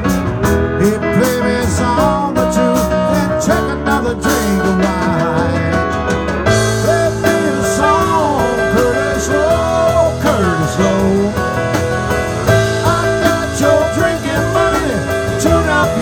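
Live band playing an instrumental break: a lead electric guitar with bent, sliding notes over bass, drums and cymbals, with a fuller, brighter drum sound from about six seconds in.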